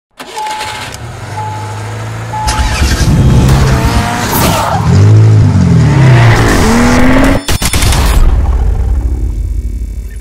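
Car sound effect: three short beeps about a second apart, then an engine revving up and down with tyres squealing. There is a short break about seven and a half seconds in, and the sound dies away near the end.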